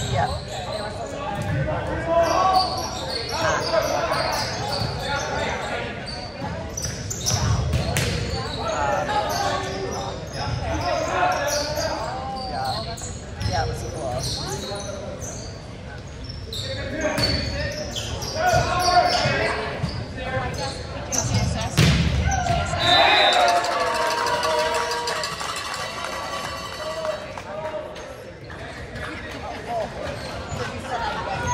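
Volleyball rally in a gymnasium: the ball being struck and hitting the hardwood floor in sharp, echoing thuds at irregular intervals, with players' and spectators' voices throughout. A brief high whistle sounds about two-thirds of the way through.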